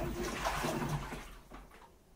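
Washing machine with water and laundry sloshing in the turning drum over a low hum; about a second and a half in the drum stops and the sound falls away to a faint background.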